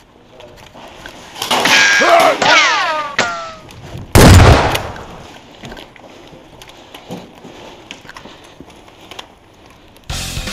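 A single loud, sudden bang about four seconds in, fading out over about a second in a hard, echoing room. Just before it, for about two seconds, comes a loud sound with several tones sliding downward in pitch.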